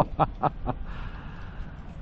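A man laughing in short breathy bursts, about four a second, that trail off within the first second, followed by a faint steady background noise.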